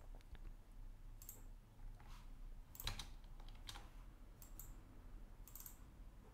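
Faint, scattered clicks of a computer keyboard and mouse, about one a second, some in quick pairs.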